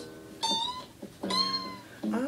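A guitar chord rings under two short high-pitched cries about a second apart, each rising slightly in pitch and then holding.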